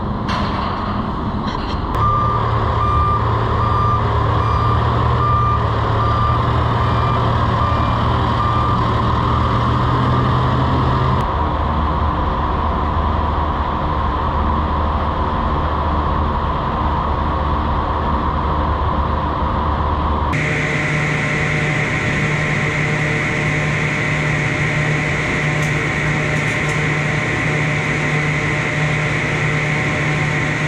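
A vehicle's reversing alarm beeping at a steady pace, a little more than once a second, over a steady engine rumble. The beeping stops after about ten seconds, leaving steady engine or machinery running, which changes in tone about twenty seconds in.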